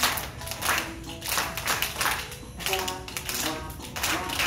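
Children clapping in time to the beat of a children's counting song, with an instrumental stretch of the tune between sung verses.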